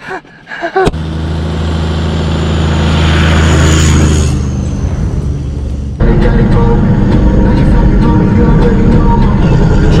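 A four-wheel drive towing a boat trailer drives along a sandy bush track past the microphone, its engine getting louder to a peak about three to four seconds in and then easing off. About six seconds in the sound changes abruptly to the steady engine and track rumble heard inside the vehicle's cabin.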